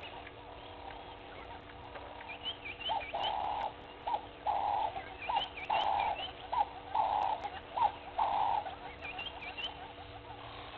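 Wild birds calling at dawn. One bird gives a run of repeated calls, short notes alternating with longer ones, from about three seconds in until near the end, over scattered higher chirps from other birds.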